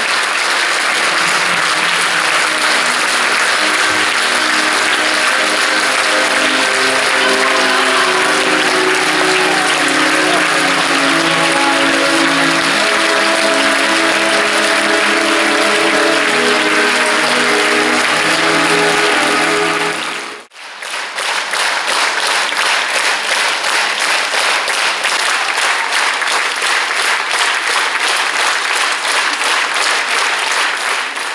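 Theatre audience applauding over music with sustained notes. About twenty seconds in, the music and sound drop out abruptly, and the applause carries on alone with an even, pulsing beat to the clapping.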